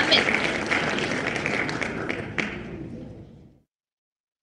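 Recorded crowd applause with cheering voices from the Wheel of Names app's winner celebration, fading out steadily and dropping to silence about three and a half seconds in.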